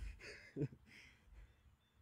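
A man's breathy exhales as he catches his breath after an exercise on parallettes, fading out about a second in.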